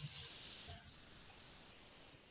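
Faint hiss from the call's audio line that fades away within the first second, leaving near-silent background noise.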